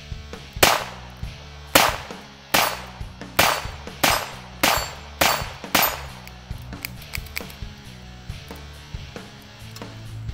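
Eight shots from a Smith & Wesson 317 Kit Gun, a .22 LR revolver, fired in a steady string about two-thirds of a second apart, the first pause a little longer.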